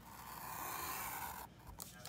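Ceramic-tipped paper cutter pen drawn in one steady stroke across an opaque paper cover sheet, a scratchy scraping sound lasting about a second and a half that stops suddenly. The tip slices the paper cleanly with hardly any pressure.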